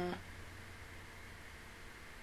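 Quiet room tone: a steady low hum and faint hiss from a desk microphone. At the very start, a brief muffled hum from a woman's voice with her hand over her mouth cuts off.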